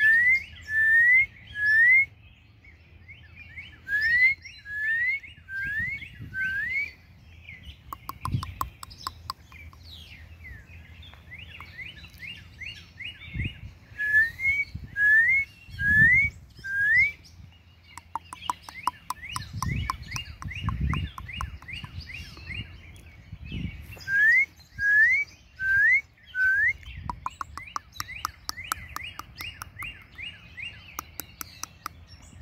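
Songbirds singing: one repeats a clear whistle that slides upward, four times to a phrase, every several seconds, with rapid chattering and twittering notes between the phrases. A few brief low rumbles come in now and then.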